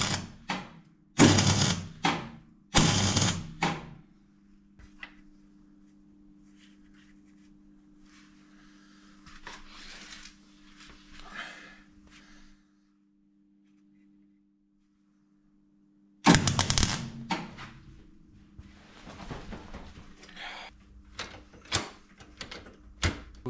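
Electric welder tacking steel in short bursts of arc crackle: three in the first four seconds and another around sixteen seconds in, with a faint steady hum between them.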